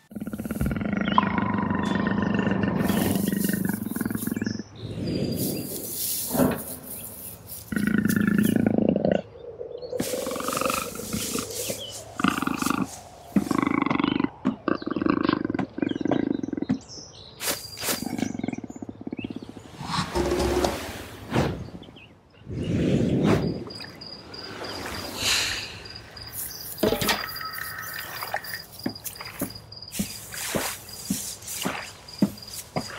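Layered jungle sound effects with no music: big-cat roars and other animal calls, whoosh swoops and short impacts over a rainforest ambience. A high, evenly pulsing insect-like chirp comes in near the end.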